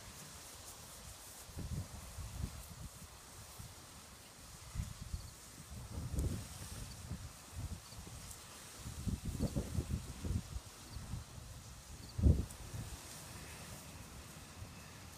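Soft low thumps and rustles of footsteps through lawn grass, coming in irregular clusters, with one louder thud near the end.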